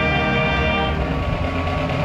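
High school marching band's brass section, sousaphones included, holding a long sustained chord.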